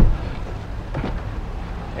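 A pickup truck's rear door shut with a solid thud, then about a second later a lighter click as the front door latch is pulled open.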